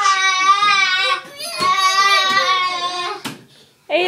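A young child's high-pitched voice drawn out in two long, wavering held notes with a short break just after a second in, a sharp click following near the end.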